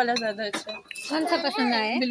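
A few clinks of ceramic mugs being picked up and set against each other and the shelf, under people's voices.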